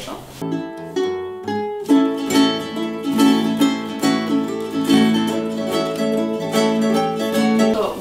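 Ukuleles and a nylon-string classical guitar playing a piece together. A few separate notes open it, then about two seconds in the whole ensemble comes in with steady plucked playing.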